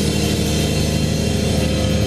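Live doom metal band: distorted electric guitar and bass hold one loud, sustained low chord that rings on steadily.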